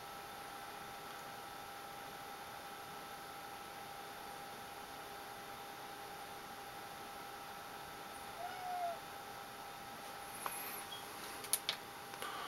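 A faint, steady whoosh with a thin steady whine from an ATX power supply running on the bench, started by shorting its green power-on pin. A short squeak comes about eight and a half seconds in, and there are a few small clicks near the end.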